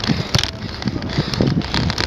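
Wind buffeting a phone's microphone while riding a bicycle, with irregular knocks and rubbing from the phone being handled.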